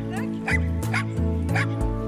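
Dogs barking and yipping in short sharp calls, about four times, over music with sustained bass notes.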